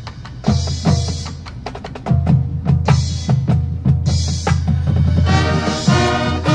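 High school marching band performing a percussion-led passage: a run of sharp drum and mallet strikes over a low held tone, with the full band returning on sustained chords about five seconds in.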